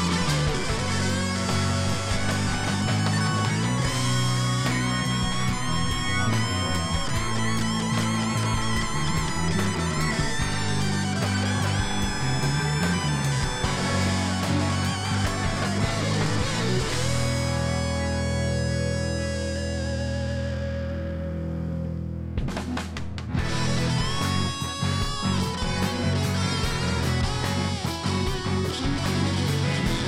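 Rock band playing an instrumental section: a lead electric guitar with bent and wavering notes over bass guitar and drums. About 17 s in the band holds one sustained chord that fades. Then the full band comes back in about 23 s in.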